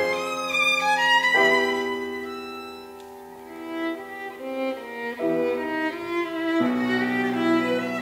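Violin playing a slow melody with grand piano accompaniment. The music fades to a soft passage about three seconds in, then swells again.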